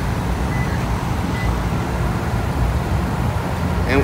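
Steady low rumble of road traffic on a multi-lane road.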